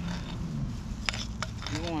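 Hand trowel digging and scraping in soil in a cinder-block hole, with two short sharp scrapes about a second in.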